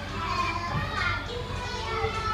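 Young children's voices, with music playing in the background.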